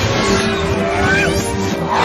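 Cartoon soundtrack music with a held note, overlaid with zooming, whooshing sound effects as glowing streaks fly past.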